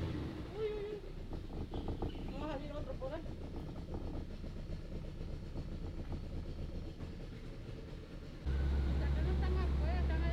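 Boat's outboard motor: a quieter low rumble at first, then from about eight and a half seconds in a louder, steady low drone as the boat runs down the canal.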